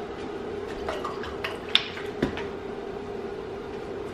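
Light handling clicks and knocks in a kitchen, two sharper ones near the middle, over a steady hum.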